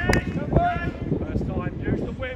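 Indistinct voices talking, with wind buffeting the microphone as a low rumble; a sharp click just after the start.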